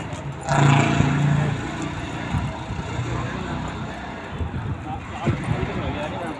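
Indistinct voices of people talking over a steady outdoor din, loudest in the first second and a half.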